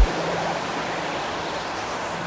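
Breakdown in a psytrance track: the kick drum and bassline cut out suddenly at the start, leaving a steady wash of white-noise-like texture with a faint low held tone.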